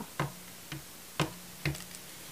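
A few short, sharp clicks and taps, about four in two seconds, as a plastic toy figure is handled and brought into place.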